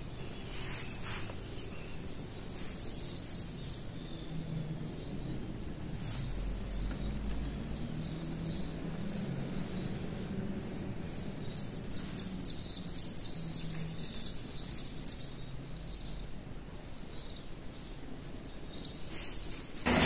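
Small birds chirping, a run of short high chirps that comes thickest about eleven to fifteen seconds in, over a low steady background hum.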